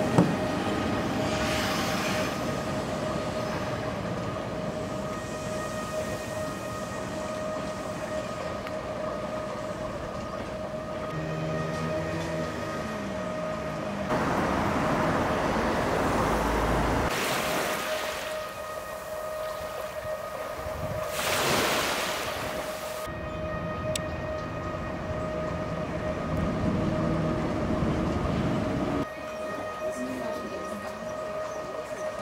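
Electric commuter train noise: a rushing rumble that swells and fades in a few passes, over a steady high hum.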